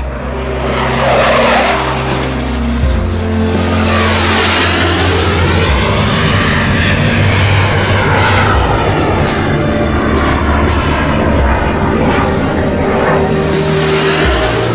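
Twin-engined Sukhoi T-50 (Su-57 prototype) jet fighter's engines at full power through the takeoff run, lift-off and flypast: a loud jet roar whose tone sweeps up and down as the aircraft moves past. Music with a steady beat runs underneath.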